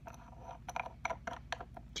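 A run of small, faint clicks and scrapes: the cap of a small glass nail polish bottle being handled and screwed shut.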